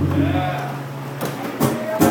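The last strummed acoustic guitar chord rings out and dies away within the first half second. Voices and a few sharp knocks follow.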